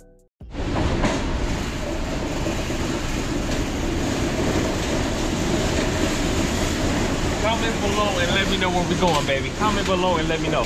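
Steady din of a package warehouse floor with a low rumble and the rattle of metal wire roll-cage carts being wheeled over concrete, starting abruptly half a second in. People's voices come in over it from about seven seconds.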